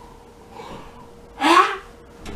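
A person's sharp, shocked gasp about a second and a half in, short and loud with a rising voiced edge, after a fainter intake of breath.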